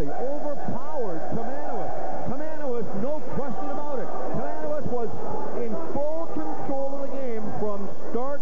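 Many voices talking and calling out at once, overlapping with no single clear speaker: players and spectators in a school gymnasium at the final handshake line.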